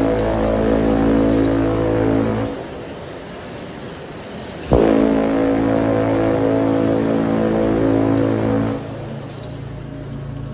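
Title-sequence sound design: a deep, sustained horn-like drone that dies away a couple of seconds in. A sharp low hit a little before halfway sets off a second matching drone, which falls away near the end.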